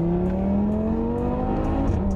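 Audi car's engine heard from inside the cabin, pulling hard with its pitch rising steadily, then dropping as it shifts up near the end.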